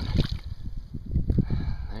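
Irregular knocks and splashes of a hooked fish being handled and lifted from the water by hand, over a low rumble.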